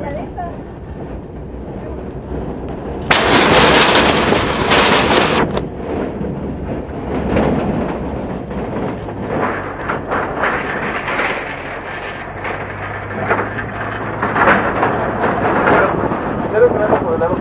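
A vehicle driving up a dirt and gravel road, its tyres and running gear rumbling under a rush of wind noise. About three seconds in, a much louder, hissing rush of noise lasts for roughly two seconds before it drops back.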